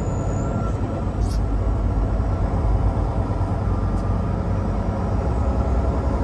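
Steady cab noise of a semi-truck cruising at highway speed: a low, even engine drone with tyre and road noise.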